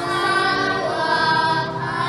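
Children's choir singing a slow hymn in long held notes.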